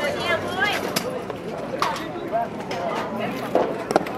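Spectators talking over one another at a baseball game. Near the end comes a sharp smack as a pitched baseball hits the catcher's leather mitt.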